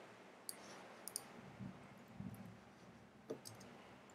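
Faint, scattered clicks of a computer keyboard and mouse: a single click, then a quick pair, and another pair near the end, with soft low thumps in between.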